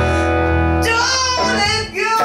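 Live band music: a woman singing over strummed acoustic guitar and bass. A held chord gives way to a new wavering sung line about a second in, with a brief dip just before the end.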